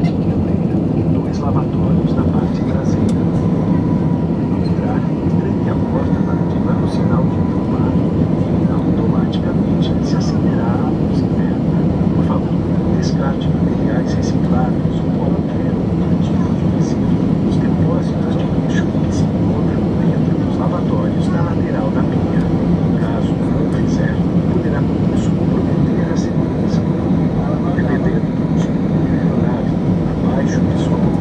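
Steady cabin roar of a jet airliner climbing after takeoff: engine and airflow noise heard from inside the cabin, with faint passenger voices over it.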